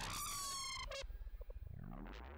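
The fading tail of an intro-sting sound effect: several falling whistle-like glides in the first second, then a low rumble dying away.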